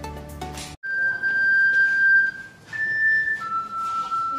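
Background music cuts off abruptly under a second in. Then a group of ocarinas plays slow, long-held notes together: a high note, a short step higher, then a longer note lower.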